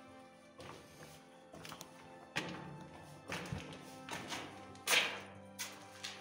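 Footsteps at a walking pace on the gritty concrete floor of a bunker corridor, a sharp step about every second, the loudest near the end. Background music with held tones runs underneath.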